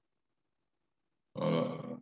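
A short, loud vocal sound from a person, lasting about half a second and starting about a second and a half in.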